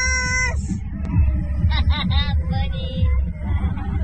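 A young man's voice: a long, high, held yell at the start, then a few short yelping syllables about two seconds in, over a steady low rumble.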